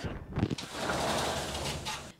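Sliding frosted-glass door rolling along its track, a steady scraping, rumbling noise lasting about a second and a half after a couple of faint knocks.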